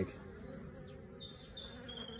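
A colony of honeybees buzzing on a brood frame lifted from an open hive: a faint, steady hum.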